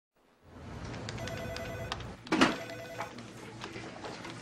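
A telephone ringing in an office, two rings over a low steady room hum. A single sharp knock comes between the two rings and is the loudest sound.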